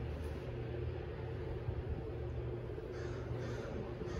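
A steady low rumble and hum, with a brief soft rustle about three seconds in.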